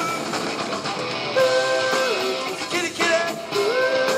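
Live rock band playing: electric guitar, bass and drums, with singing and long held notes, one about a second and a half in and another near the end.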